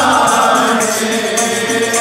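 Sikh kirtan: men chanting a hymn together over sustained harmonium chords, with tabla playing a steady rhythm.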